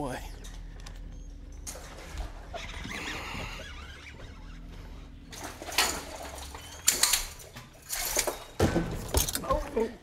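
An angler fighting a hooked bass from a bass boat: a run of sharp splashes, knocks and scuffles, several of them loud, in the last four seconds.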